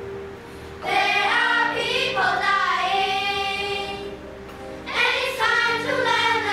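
A children's choir singing a song in English. The voices come in strongly about a second in, ease off around four seconds, and return near the end.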